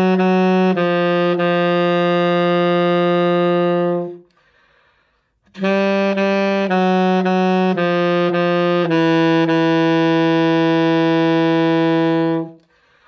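Alto saxophone playing a low-register note exercise: a few short low notes lead into a long held note. After a pause of about a second and a half, a second similar phrase of short notes ends on another long held low note.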